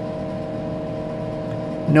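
Steady hum of a running Tektronix 4054A computer: several fixed tones over an even hiss, unchanging throughout.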